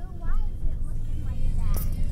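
Steady low rumble of a car's interior, with girls' voices talking over it.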